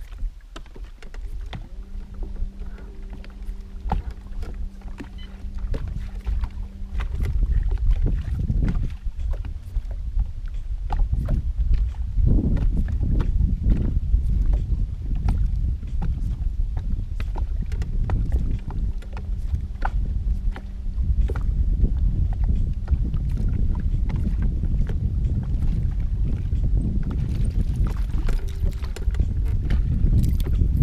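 Wind rumbling on the microphone and small waves slapping against the hull of a bass boat, with scattered clicks from handling the rod and reel. A steady low hum comes in twice, for about five seconds near the start and for a couple of seconds a little past the middle.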